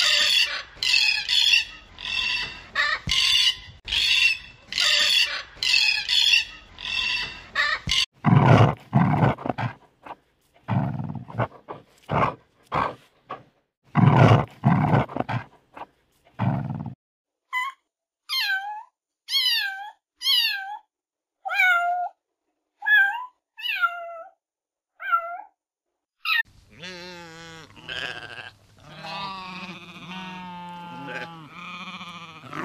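A run of different animal calls. For the first eight seconds rapid calls come about twice a second. Then, until about 17 s, a dog barks in deep, loud strokes. Then about eight separate calls fall in pitch, one a second, and near the end sheep bleat.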